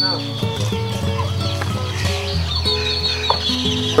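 Chickens clucking over background music of sustained, stepping notes.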